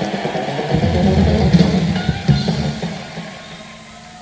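Live rock band playing a short loud passage with electric guitar and heavy bass, dying away over the second half.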